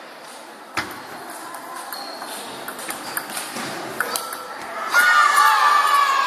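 Table tennis ball clicking off bats and table in a rally, roughly one hit a second, then loud shouting voices from about five seconds in.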